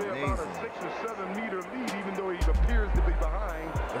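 Voices with music underneath. A loud low rumble comes in about two and a half seconds in and lasts over a second.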